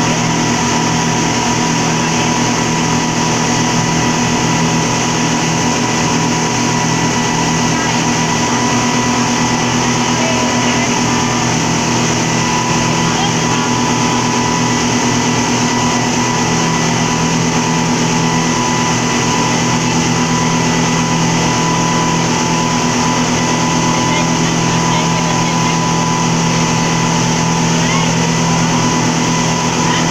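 Speedboat engines running steadily under way, heard from inside the cabin: an even drone with a constant low hum and a thin whine.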